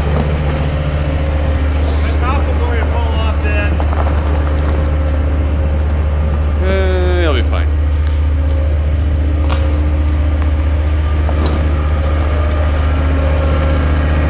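John Deere 326D skid steer's diesel engine running steadily, with a brief falling whine about halfway through.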